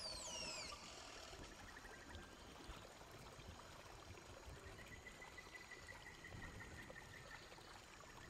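Near silence: a faint, steady rush like flowing water, with a few quick falling whistles at the very start.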